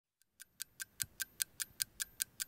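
Clock-ticking sound effect: fast, even ticks at about five a second, starting shortly after the beginning.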